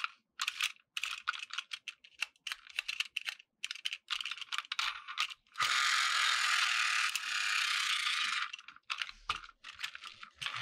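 Plastic toy crane train handled in the hands: quick plastic clicks and rattles. About halfway through, a steady rasping, ratchet-like whirr lasts about three seconds, then the clicking resumes.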